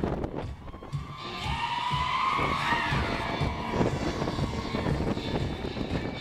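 Crowd of concert fans screaming as a singer crowd-surfs over them, the screams swelling and rising in pitch for a few seconds before easing off, over band music with a steady low beat.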